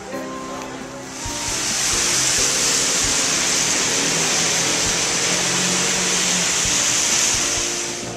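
Steady, loud hiss of a rain-wet street, starting about a second in and cutting off suddenly at the end, with music going on underneath.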